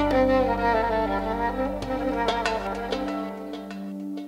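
Solo violin playing a stepping, descending melodic line over a sustained low bass drone; the bass drops out about three seconds in, leaving a held tone and a few light plucked notes.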